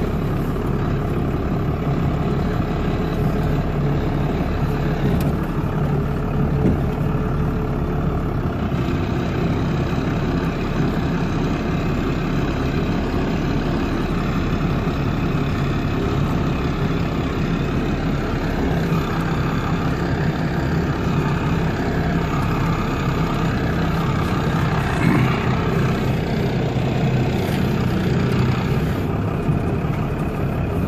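Vehicle engine running steadily while driving slowly, heard from inside the cab.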